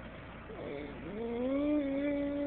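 A drawn-out, voice-like tone that slides up in pitch about a second in and is then held steady on one note.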